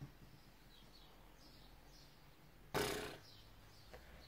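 Faint bird chirps in the background. About three-quarters of the way through comes a sudden loud burst of breath from the woman, which dies away within half a second, while fine loose powder is being brushed on.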